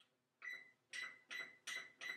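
Electronic oven control panel beeping as its keys are pressed to set the bake temperature: short high beeps of one pitch, about every half second, four or five in a row.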